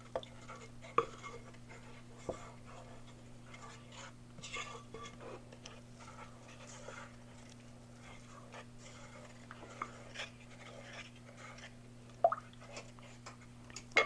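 Faint scraping of a wooden-handled spatula against a ceramic mixing bowl as a cream sauce is stirred, with a few sharper knocks against the bowl, one about a second in and one near the end. A steady low hum runs underneath.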